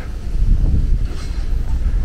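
Low, uneven rumble of wind buffeting the camera microphone.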